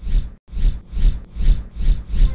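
Rhythmic rasping noise strokes, about five in two seconds, each swelling and fading, with a deep thump under each.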